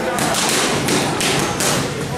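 Boxing gloves striking leather focus mitts in a quick run of punches, about three a second.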